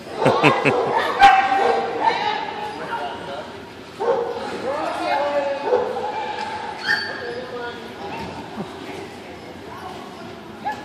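A dog barking and yipping over and over, loudest in two bouts during the first seven seconds, with a person laughing at the start.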